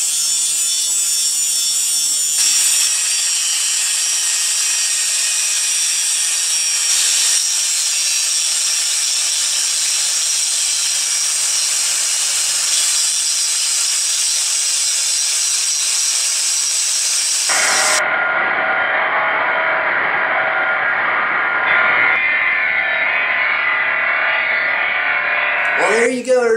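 Angle grinder wheel grinding a series of steel and cast iron samples for a spark test, in short spliced takes: a steady, loud, hissing grind whose tone shifts at each cut, and which is duller for the last several seconds.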